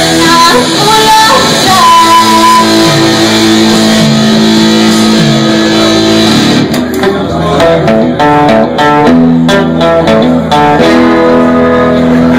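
Live band with electric guitars and a singer playing the close of a song; about halfway through the busy high end drops out and a final chord is left ringing.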